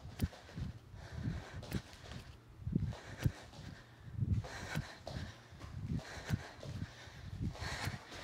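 Bare feet landing on a hardwood floor in a steady run of dull thuds, about two a second, from repeated in-and-out jumping squats.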